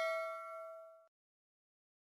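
Notification-bell ding sound effect ringing out: a bright chime of several steady tones fading away and cutting off about a second in.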